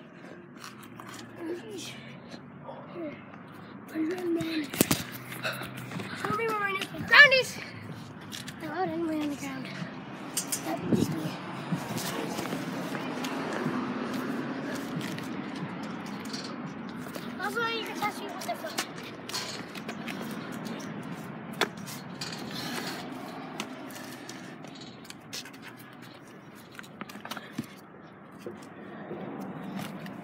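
Children's voices calling out now and then, with rustling and knocks from a handheld phone being moved and rubbed against clothing.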